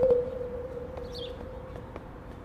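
A single steady held tone that fades away over the first second or so, with a bird chirping briefly about a second in.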